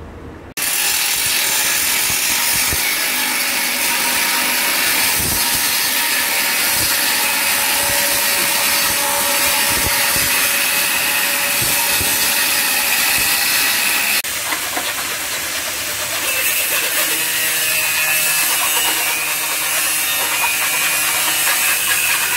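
Angle grinder cutting into a sheet-metal distribution board enclosure: a loud, steady grinding hiss with a faint motor whine underneath. It starts abruptly about half a second in and changes sharply about two-thirds of the way through as a new stretch of cutting takes over.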